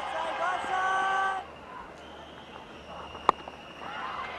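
Cricket stadium ambience: a steady held tone sounds over the first second and a half and stops abruptly, leaving quieter ground noise, with a single sharp knock a little past three seconds in.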